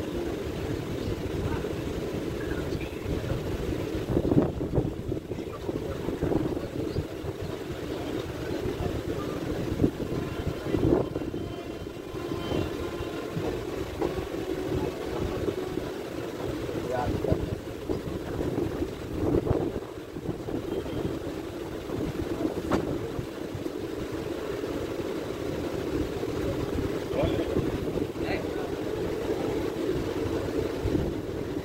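Passenger train coach heard from its open door while running: a steady rumble of wheels on the track with wind buffeting the microphone, and a few sharp knocks from the wheels over rail joints or points.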